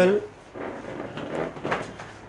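Furniture scraping and knocking as people shuffle about and settle into seats, with a few sharp knocks in the second half.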